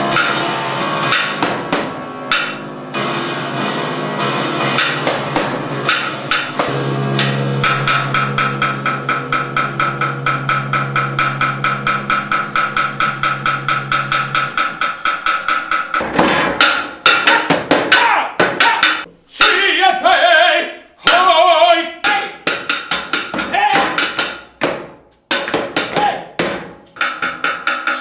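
Solo grand piano performance. Dense sustained notes give way to fast, evenly repeated notes about eight seconds in, then to sharp percussive strikes with short gaps in the second half, where a voice joins in.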